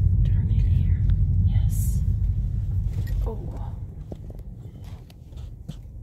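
Car rumble from the engine and tyres, heard from inside the cabin, with faint voices and a short hiss about two seconds in. The rumble fades away in the second half.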